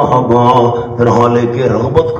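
A man's voice reciting Quranic Arabic in a slow chant, with long held notes.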